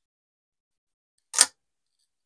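A single short, sharp click about one and a half seconds in.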